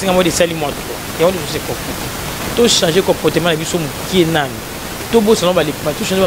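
Speech with a steady hiss underneath.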